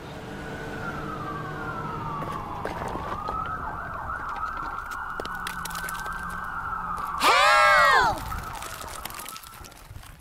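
Several emergency sirens wailing together, their pitch sliding down and levelling off, with a loud cry that rises and falls about seven seconds in. The sirens fade near the end.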